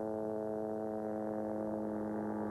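Background music: a sustained synthesizer chord held steady.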